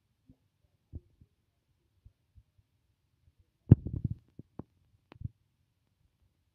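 A few scattered soft low thumps and clicks. A louder cluster of knocks comes about two-thirds of the way through, followed by three or four sharper clicks.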